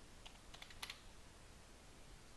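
A few faint computer keyboard keystrokes in the first second, typing the end of a short command and pressing Enter.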